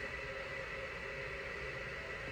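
Steady room background: a constant hiss with a faint unchanging hum, like ventilation or electrical noise in a small room.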